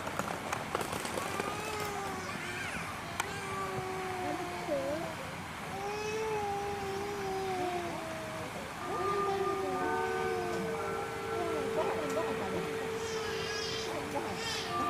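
High-pitched voices making drawn-out, wavering calls one after another. Steady tones join them about ten seconds in.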